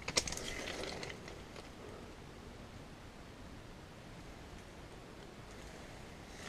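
A few faint rustles and clicks in the first second or so, then a low, steady outdoor background hiss.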